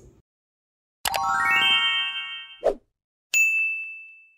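Subscribe-button animation sound effect. A rising sweep of climbing tones starts about a second in, a short pop follows, and then a single notification-bell ding rings out near the end.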